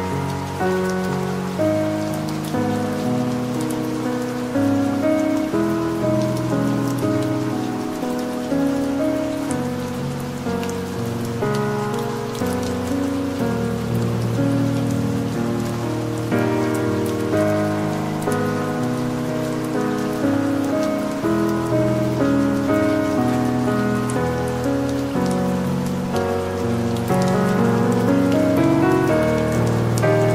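Calm, slow piano music, its chords changing every second or so, over a steady bed of soft rain with scattered patter.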